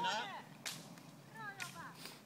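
Roller-ski pole tips striking the asphalt road: sharp clicks about once a second, two of them here, keeping the rhythm of skiers skating uphill.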